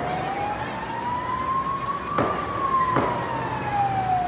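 A siren wailing, slowly rising and then falling in pitch, with two gunshots cracking out about two and three seconds in.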